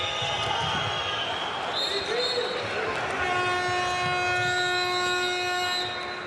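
Handball game sound from a packed arena: crowd noise with a ball bouncing on the court. From about three seconds in, a long steady pitched tone, like a horn, sounds over the crowd and stops abruptly just before the end.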